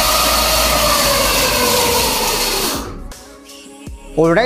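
Homemade electric bike's motor spinning the raised rear wheel through its chain drive at high speed, a whine whose pitch slowly sinks, then winding down and fading about three seconds in.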